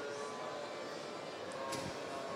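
Steady background noise of a busy exhibition hall: an even hum with a few faint steady tones and no distinct events.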